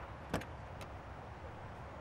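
A car door is unlatched and opened: a sharp click about a third of a second in, then a lighter click, over a low steady rumble.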